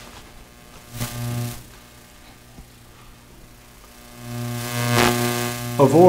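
Steady electrical mains hum from a church sound system. A brief rustle comes about a second in. Near the end a louder rustle and a swell in the hum follow as a microphone at the lectern is approached and handled.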